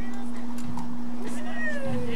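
A steady low hum, with a high voice gliding down in pitch from a little over halfway through.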